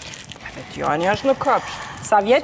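A person's voice making a few short wordless vocal sounds with sliding pitch, from a little before the middle to past it.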